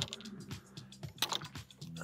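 Irregular light clicks and clinks of golf clubs knocking together in a cart bag as a wedge is drawn out, over soft background music.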